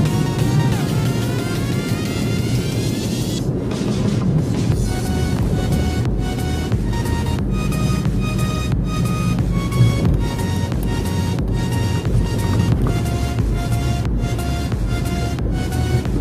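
Background electronic music with a steady beat and a short repeating melody; a rising sweep builds over the first few seconds before the beat drops back in.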